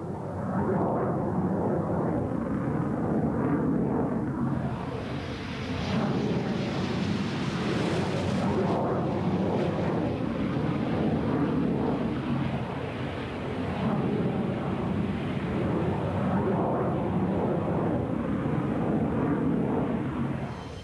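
Jet aircraft in flight: continuous engine noise that swells and eases a few times, with a brighter, hissier stretch from about five to nine seconds in.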